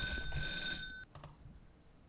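A brief electronic beep made of several steady high tones, about a second long, cut off by a click and followed by near silence.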